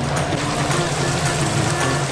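Chicken deep-frying in a commercial fryer: the steady, dense sizzle of bubbling oil, with background music underneath.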